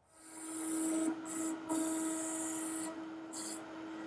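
Shapeoko CNC router cutting a wooden sheet: the spindle gives a steady whine while the bit's cutting noise hisses in and out in spells. The sound fades in at the start.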